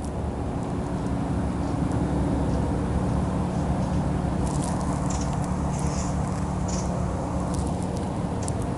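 A steady low motor hum, with a few faint high chirps from about halfway through.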